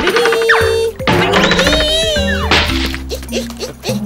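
Cartoon background music with comic sound effects: pitched swoops that slide down and then up and down, and a whack.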